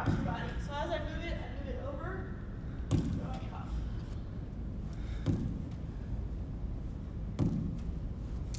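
A lacrosse ball knocking sharply off a painted block wall in a wall-ball drill, the rebound caught in a lacrosse stick: four knocks about two and a half seconds apart.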